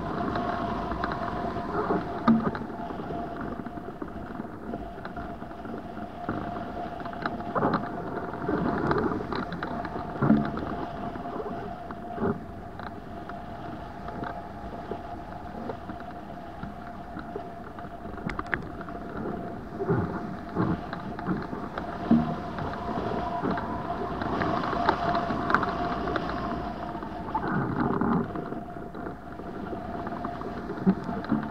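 Wind rushing over the microphone of a hang glider in flight, with irregular gusts and knocks every few seconds from the bumpy, choppy air, and a steady whistling tone underneath.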